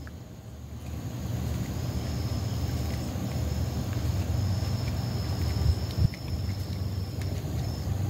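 Steady low outdoor rumble with a faint high steady tone above it, and a couple of small clicks about six seconds in.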